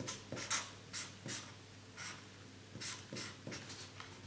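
Pen scratching across a sheet of paper in handwriting: short strokes in quick runs, with a pause of about a second in the middle.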